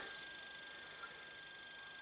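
Quiet room tone with a faint, steady high-pitched whine and one tiny tick about a second in.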